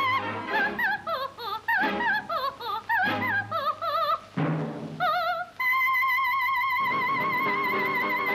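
A soprano voice with orchestra on an old film soundtrack, singing wordless runs that rise and fall quickly with wide vibrato. A percussion stroke comes a little after four seconds in, then the voice settles on one long high note with wide vibrato.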